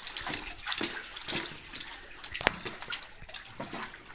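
Water splashing and sloshing in a shallow pool: irregular small splashes, with one sharp click about two and a half seconds in.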